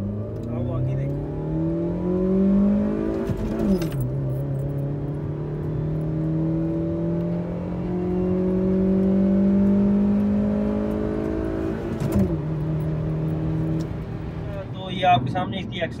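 Suzuki Liana's 1.3-litre four-cylinder petrol engine, heard from inside the cabin, revving up under hard acceleration. The revs fall sharply at a gear change about four seconds in, climb again for about eight seconds, fall at a second gear change, then hold steady. The engine was recently tuned up with new spark plugs.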